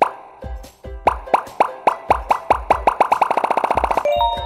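Animated logo intro jingle: a string of short, pitched, cartoonish pops over a low beat. The pops start about a second in and speed up into a rapid roll near the end.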